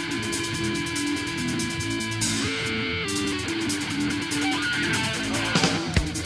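Punk rock band playing: electric guitar chords ring over an even cymbal beat, shifting chord a little over two seconds in. Hard drum strokes come in near the end.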